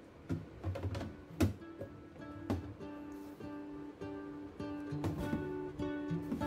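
Background music played on acoustic guitar, with plucked and strummed notes ringing on. A few sharp strokes come in the first two seconds.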